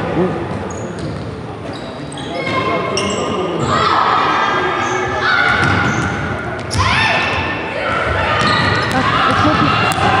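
Basketball being dribbled on a hardwood court, with a run of high-pitched sneaker squeaks from the players' shoes starting about two seconds in, in a large sports hall.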